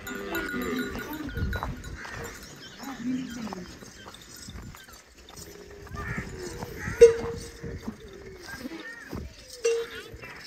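Goats bleating in a scattered flock, with a sharp clack about seven seconds in and another near the end.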